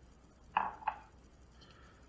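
Ceramic coffee mug set down on a granite countertop: two short clacks about a third of a second apart, the first louder.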